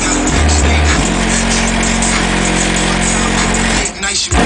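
Bass-heavy music played very loud through a car audio system with three 15-inch Kicker Comp subwoofers in the trunk, heard from outside the car. A heavy bass hit comes about half a second in.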